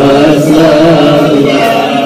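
Men's voices chanting an Arabic devotional verse in a slow, drawn-out melody, led through a microphone.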